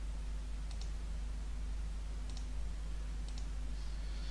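Computer mouse clicking: three quick double-clicks, each a pair of light clicks, over a steady low hum.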